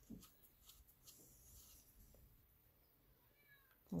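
Near silence: faint clicks and rubbing of a plastic clay extruder being handled as soft clay is pushed into its barrel, with a faint, brief high-pitched glide near the end.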